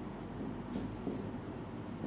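Faint scratching strokes of a marker writing on a board.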